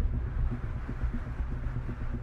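Low, steady rumble of an edited-in cinematic sound effect: the tail of a boom hit that struck just before.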